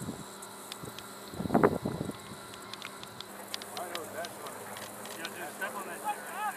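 A short, unclear shout from a person about a second and a half in, over a faint outdoor background with scattered light clicks.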